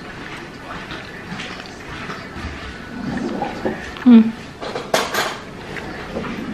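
Mouth sounds of someone eating juicy ripe mango straight from the hand: wet smacking and sucking, with a short hum about four seconds in and a cluster of sharp smacks about a second later.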